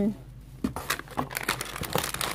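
Plastic grocery packaging crinkling and rustling as items are handled in a cardboard box, an irregular run of crackles starting about half a second in.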